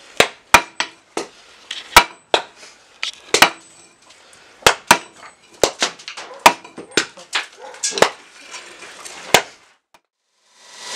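Hammer blows on a hot iron bloom held in tongs on a steel plate, consolidating the bloom: sharp strikes at an uneven pace of about two a second, stopping just before the end.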